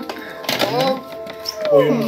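Voices speaking briefly over background music.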